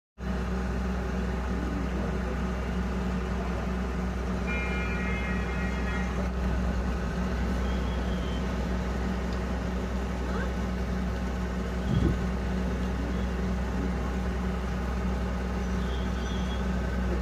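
A tanker truck's engine running steadily at idle. A brief high tone comes in about five seconds in, and there is a single knock near the twelve-second mark.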